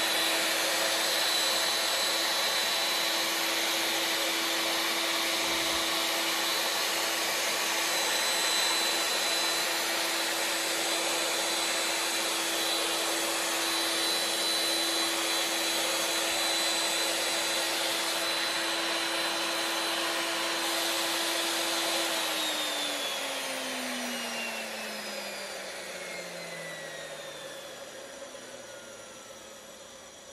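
Hitachi Koki MB-21A magnetic drill press motor running steadily with no load, a whine over a rushing hum. About two-thirds of the way through it is switched off and winds down, the whine falling in pitch and fading. The seller reports no abnormal noise or looseness.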